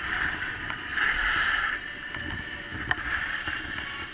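Skis hissing and scraping over packed snow through a series of turns, swelling loudest about a second in and again near three seconds. A single sharp click comes just before three seconds.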